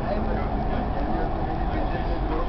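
Dubai Metro train running, heard inside the carriage as a steady rumble, with indistinct passenger voices under it.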